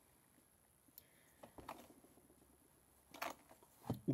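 Near silence, with a few faint clicks and handling sounds from pipes being turned in the hands.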